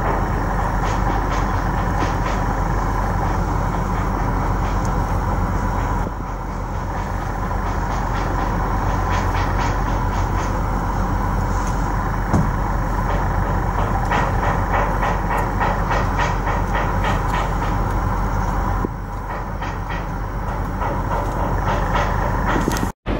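Steady mechanical rumble and noise of a busy port, with a run of fast ticking in the second half.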